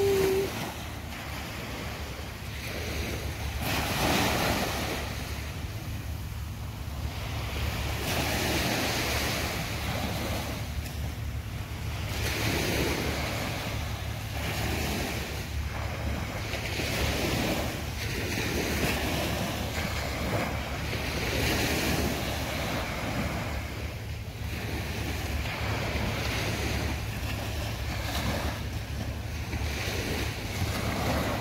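Small waves breaking and washing up a sandy beach, the surf swelling every four seconds or so. Wind buffets the microphone with a steady low rumble.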